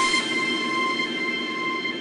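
The outro of a dubstep mix, with the drums and bass cut out, leaving a sustained high-pitched synth tone over a hiss that slowly fades.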